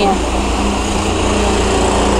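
Small go-kart engines running steadily, a continuous drone echoing in an indoor track hall.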